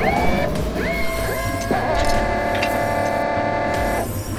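Synthesized electronic tones: several rising whines in the first half settle into a held, many-layered chord about halfway through, which cuts off suddenly at the end.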